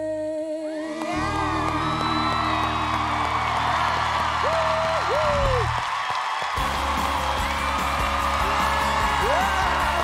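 A woman's last held note with vibrato ends a pop ballad, then a studio audience cheers and whoops loudly over the band's sustained closing chord. The music drops away briefly a little past halfway, then comes back in under the cheering.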